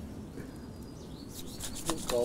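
A large chef's knife sawing down through a stuffed flour-tortilla burrito, a soft rasping scrape of the blade, with a quick run of short crackling clicks near the end.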